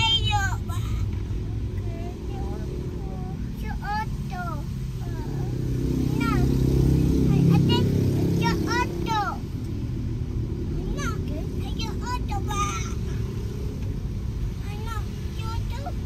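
Steady engine and road rumble heard inside a moving car, swelling for a few seconds in the middle, with a child's high-pitched voice calling out in short bursts now and then.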